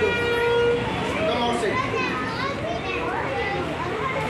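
Many children's voices calling out together over each other during a group warm-up exercise, with a long, steady held tone in the first second.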